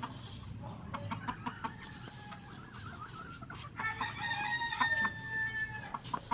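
Gamefowl clucking, with a rooster crowing: a faint long call in the first half, then a louder, held crow from about four seconds in.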